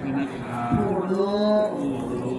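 A male voice chanting a Thai Buddhist verse, drawing out one long, steady note for about a second in the second half.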